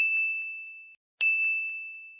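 Two high, bell-like ding sound effects about a second apart, each struck sharply and fading out over about a second.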